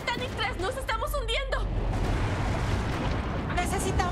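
Several people screaming in panic, their cries wavering up and down for about the first second and a half and starting again near the end, over a continuous low rumble and dramatic trailer music.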